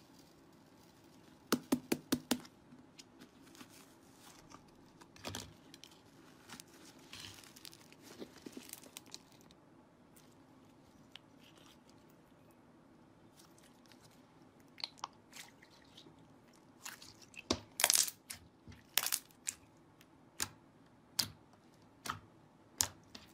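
Clear slime full of star glitter being pressed and poked with the fingers, giving sharp clicking pops. There is a quick cluster of pops a little into the sound and a few scattered ones, then a run of louder pops through the last several seconds.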